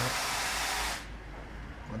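Steady hiss of noise that cuts off suddenly about a second in.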